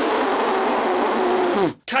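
A man blowing air hard through pushed-out lips: a steady, loud hiss with a faint hummed tone under it that drops in pitch just as it cuts off, nearly two seconds long.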